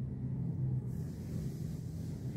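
A low steady hum of background room noise, with no distinct event.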